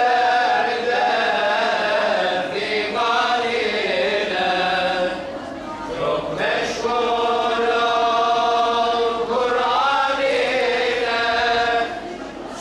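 Voices chanting a religious chant in long, held melodic phrases, with brief pauses about two and a half, five and a half and nine and a half seconds in.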